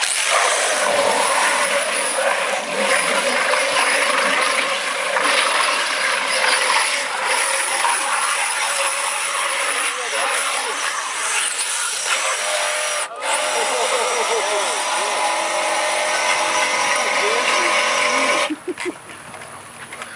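Radio-controlled scale crawler driving hard through thick mud and water: loud, steady churning of spinning tyres in the mud together with the drive motor running. It cuts off near the end.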